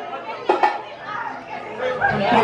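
Voices: people chatting.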